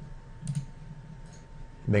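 Computer mouse clicking once, a short sharp click about a quarter of the way in, with a fainter click later, over a faint steady tone.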